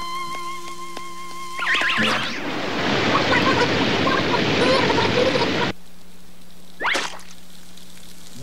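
Cartoon sound effects: a steady high whistle of steam jetting out, then, about two seconds in, a loud rush of falling water pouring down. The water cuts off suddenly near six seconds in, and a short sweep follows about a second later.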